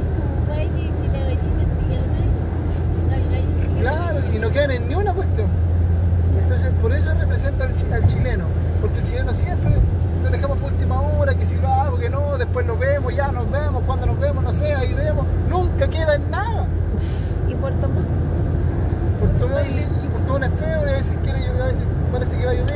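Steady low drone of a car's engine and tyres heard from inside the cabin while driving at highway speed.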